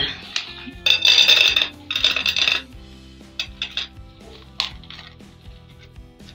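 Dry cat kibble poured from a cup into a metal cat bowl, rattling in two bursts about a second apart, followed by a few light clicks of kibble.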